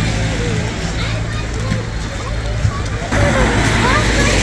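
Street ambience: steady traffic rumble with indistinct voices in the background, the overall sound stepping up abruptly about three seconds in.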